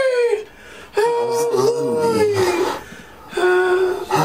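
A person's voice wailing in long, high drawn-out cries, each sagging in pitch at its end: one fading out just after the start, another about a second in lasting well over a second, and a third starting near the end.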